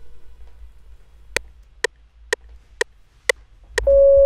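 FL Studio's metronome counting in before recording: sharp, evenly spaced clicks at 124 BPM, about two a second. Just before the end, a held note played on the keyboard starts.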